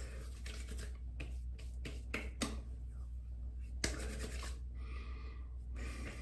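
Faint handling sounds of an aftershave splash bottle being shaken into the palm: a few light clicks and taps, then about a second of soft rubbing near the end as the splash is spread between the hands.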